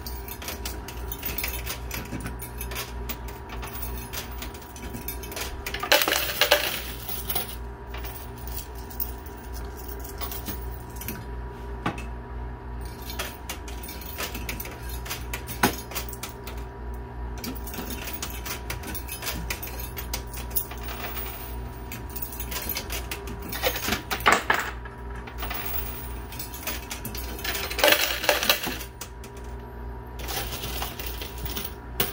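Quarters clinking and dropping in a coin pusher arcade machine, a dense run of small metallic clicks, with louder rattling clusters of coins about six seconds in and twice near the end. A steady hum runs underneath.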